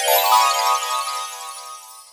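A bright electronic chime sound effect: several ringing tones struck together with a glittering high sparkle above them, fading away over about two seconds. It is a transition sting marking the page turn.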